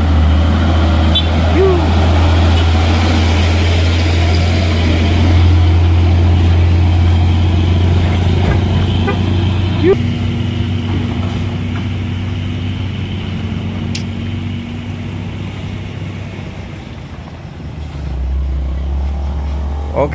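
Hino 500 dump truck's diesel engine running close by as it crawls through a bend, a deep steady drone that dies away about halfway through. Another vehicle's engine comes up near the end.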